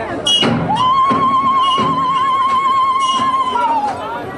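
A single high voice holds one long wavering note for about three seconds, sliding up into it and dropping away at the end, over the Zulu dance troupe's noise. There are a few thuds near the start.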